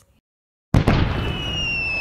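Explosion sound effect: after a moment of silence, a sudden blast about three-quarters of a second in, then a rumble with a whistle that slowly falls in pitch.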